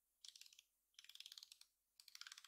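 The clicking control ring around the lens of a Canon G7X Mark II compact camera being turned by hand, its detents giving two quick, faint runs of fine clicks, the second about a second in and longer.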